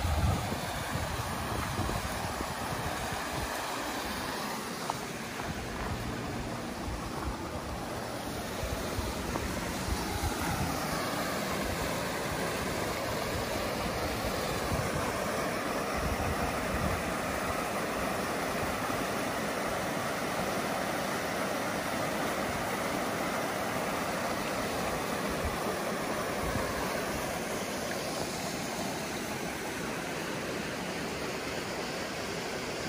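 Creek water rushing over a small rock waterfall and shallow riffles: a steady, even rush.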